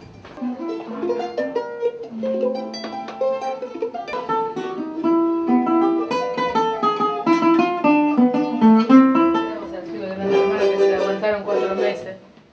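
Venezuelan cuatro played in quick runs of plucked notes, starting about half a second in.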